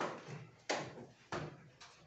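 Metal folding chair knocking and clattering as someone sits down and settles on it: a few short, sharp knocks less than a second apart.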